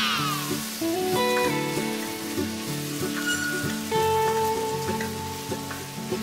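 Background music of held notes over rice and chopped vegetables sizzling in oil in a steel pot as they are stirred.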